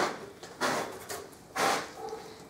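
Two short scraping rustles, the second louder, from a long plastic side-skirt extension being handled and moved.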